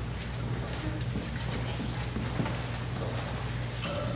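A steady low electrical hum with a few faint, irregular taps.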